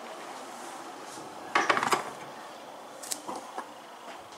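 A brief clatter of kitchen dishes and utensils knocking together about a second and a half in, followed by a sharp click and a few lighter knocks.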